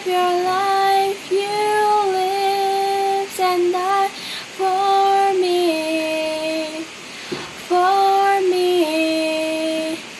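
A young girl singing a slow worship song solo with no accompaniment, in long held notes that step down in pitch from phrase to phrase, with short breaths between phrases.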